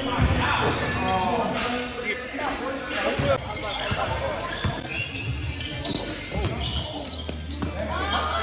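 A basketball bouncing several times on a hardwood gym court during a pickup game, with players' voices calling around it.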